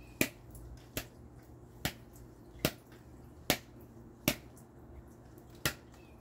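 Wild salad greens being snapped by hand, seven crisp snaps a little under a second apart.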